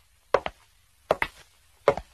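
Footsteps at a steady walking pace, three steps in two seconds, each step a quick double knock.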